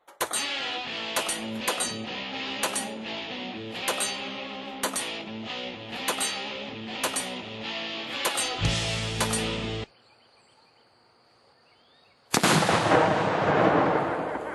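Music with a beat and sharp hits for about the first ten seconds, ending abruptly. After a couple of seconds of near silence, a single loud explosion from an exploding target goes off and slowly dies away.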